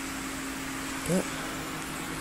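Cooling fans on the heat sinks of a Peltier thermoelectric cooler running: a steady whir of moving air with a low steady hum under it.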